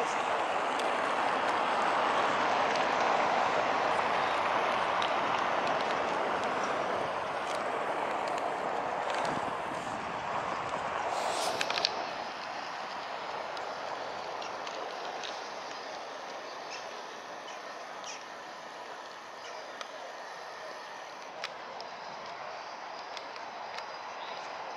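Open-square city ambience: a steady wash of distant traffic, louder in the first half and fading somewhat after about halfway, with a few faint clicks.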